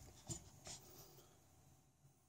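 Near silence, with two faint, brief scuffs in the first second and then nothing.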